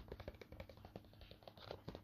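Faint, irregular light ticks and taps from a paper wall calendar being handled and held up by hand.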